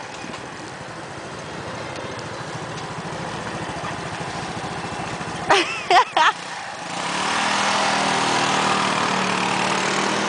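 Small motor scooter engines idling, then running louder and higher as the scooters pull away about seven seconds in.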